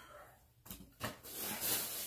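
Rustling of handled shop items as they are set aside, starting about a second in after a faint click.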